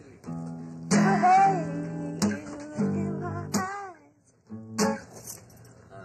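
Acoustic guitar strumming chords: a strum a little over once a second, each chord left to ring, with a short lull about four seconds in.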